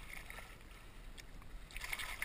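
A hooked largemouth bass thrashing at the water's surface beside a float tube, splashing lightly, with a flurry of splashes near the end.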